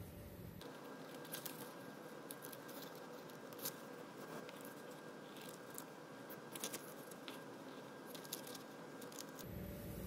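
Faint, irregular snips of small hand scissors cutting through sheets of graph paper.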